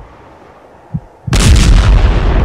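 Film sound-effect explosion of the Moon crashing into the Earth: a low rumble with two deep thuds, then about 1.3 s in a sudden, very loud blast that carries on as a heavy rumble.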